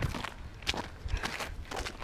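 Footsteps of a person walking, about two steps a second, picked up close by a body-worn action camera, over a low rumble.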